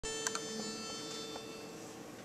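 Pitch pipe blown to sound a single steady, reedy note: the starting pitch for an a cappella barbershop quartet. The note fades out near the end, and two short clicks come about a quarter second in.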